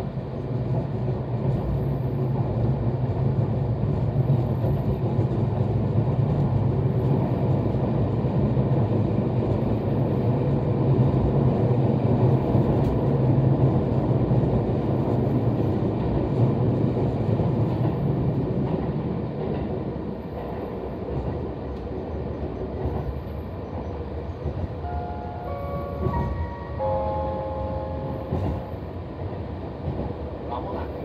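Nagano Electric Railway 2100 series electric train running through a tunnel, heard from inside the passenger car: a loud, steady rumble that eases and grows quieter about two-thirds of the way through. Near the end a brief series of stepped tones sounds over it.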